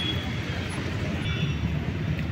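Steady hum of distant road traffic in the open air, with no single vehicle standing out.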